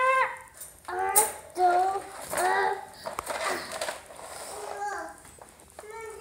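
A young child's wordless vocal sounds: several short, high-pitched calls with rising and falling pitch during a tug of war.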